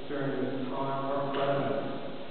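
A man talking: speech only.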